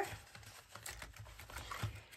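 Faint soft clicks and rustles of laminated plastic pages and cash envelopes being handled and turned in a ring binder.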